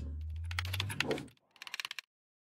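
A series of light clicks over a low hum for about a second, then, after a short gap, a quick run of clicks near the end.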